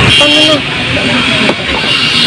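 Roadside traffic noise with a brief horn toot near the start and a single sharp click about one and a half seconds in.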